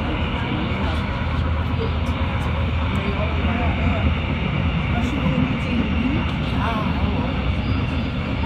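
Amsterdam metro train running at speed, heard from inside the carriage: a steady rumble and hiss from wheels on rails, with faint passenger voices underneath.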